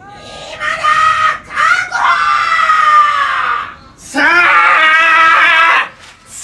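A man's voice yelling at the top of his lungs in two long, drawn-out shouts. The first runs about three seconds with its pitch sinking slowly. The second starts about four seconds in and runs about two seconds.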